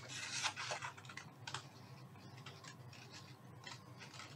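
Stylus tapping and scratching on a tablet screen while handwriting a short subscript. It makes a cluster of light clicks in the first second and a half, then a few sparse, faint ticks.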